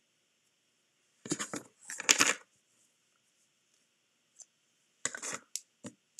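Hands handling crafting supplies: short rustles and clicks. Two bursts come about a second in, the second one louder, then a cluster of quick clicks near the end.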